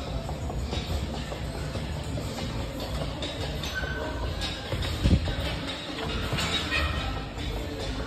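Heavy battle ropes whipping and slapping the gym floor in quick repeated waves, with one louder thud about five seconds in, over background music.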